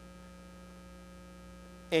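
Steady electrical mains hum: a low buzz with a few fixed higher tones, even in level throughout.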